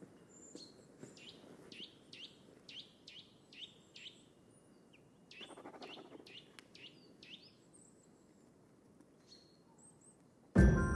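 Faint birdsong: a quick run of short, downward-sliding chirps, two or three a second, with a few thin high calls, thinning out over the last couple of seconds.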